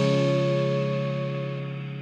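Background music: a strummed guitar chord left ringing and slowly fading out.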